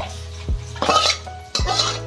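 A steel lid clinking and scraping against a stainless steel serving bowl, twice, over background music with a steady beat.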